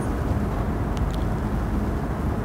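Steady low rumble and hiss of background room noise in a TV studio, with a couple of faint ticks about a second in.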